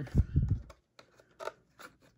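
Empty cardboard trading-card hobby box being handled and its lid folded shut: a few low thumps in the first half second, then faint taps and scrapes.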